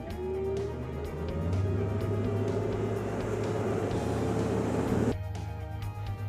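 Large outboard motor revving up as the fishing boat gets underway, its pitch climbing over rushing water and hull noise, with background music. The engine sound drops off suddenly about five seconds in.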